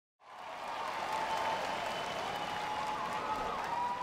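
Large audience applauding, fading in just after the start, with a faint wavering tone above the clapping.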